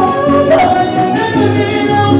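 A Huastec string trio playing a huapango: violin melody over the strummed jarana and huapanguera, with singing above it.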